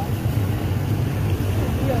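Small underbone motorcycle engine running steadily while riding through shallow floodwater, with water splashing and washing around the wheels.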